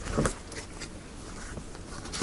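A deck of tarot cards being handled on a table: one soft knock about a quarter of a second in, then a few faint clicks and rustles of cards.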